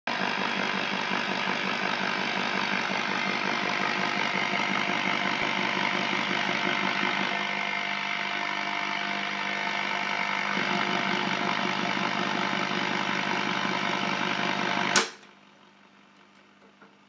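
Soviet Yugdon tube radiola's loudspeaker putting out loud, steady radio static with a hum, untuned to any station; the noise shifts a little as a front knob is turned. About fifteen seconds in, a sharp click and the static cuts out.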